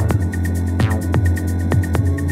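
Electronic dance music made from Native Instruments Indigo Dust samples: a sustained deep bass hum under a steady beat with quick high ticks, and a falling synth sweep about a second in.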